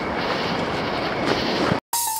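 Steady rushing background noise with no distinct events, which cuts off abruptly near the end.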